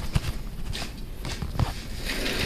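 Rustling of a heavy winter parka and light shuffling steps, with scattered soft clicks and knocks, close to a body-worn camera's microphone.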